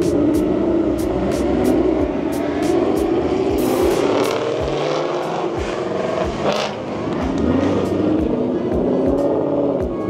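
Ford Mustangs driving past one after another under acceleration. Their engine notes rise and fall as each car revs, passes and pulls away, with music playing underneath.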